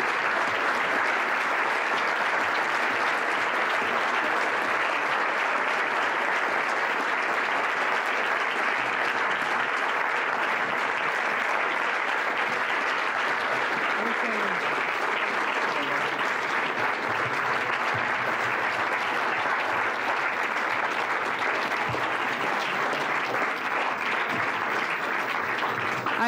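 A large audience applauding steadily for a long time, a sustained ovation at the end of a talk.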